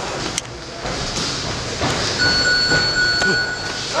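Noisy MMA gym during sparring: a general clatter of movement and scattered knocks, with a steady high electronic tone held for about a second and a half past the middle.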